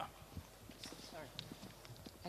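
Handheld microphone being handled as it is passed from one person to another: a series of soft knocks and clicks from the mic body, with faint voices in the background.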